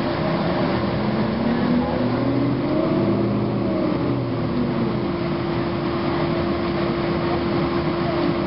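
Cabin sound of a 2009 Gillig Advantage transit bus under way, its Cummins ISM diesel and Voith transmission pulling. The engine note rises in pitch over the first few seconds and then falls back, over a steady hum.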